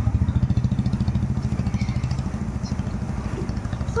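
A small engine idling nearby with a rapid, even throb that eases off a little toward the end.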